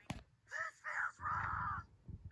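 A cartoon character's wordless vocal outburst played through a screen's speaker: a sharp click, then two short cries and a longer harsh, raspy shriek.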